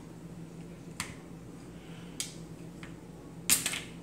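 A couple of faint plastic clicks, then a louder snap near the end as an Aurelus Howlkor Bakugan's spring-loaded plastic ball pops open into its figure.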